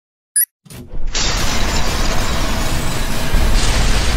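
Intro sound effects: a short sharp click, then from about a second in a loud, steady mechanical rattling, joined about three and a half seconds in by a deep explosion boom.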